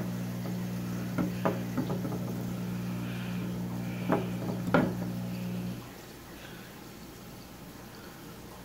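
A steady electrical hum that cuts off suddenly about six seconds in, with a few light knocks and taps over it, the two loudest a little past halfway.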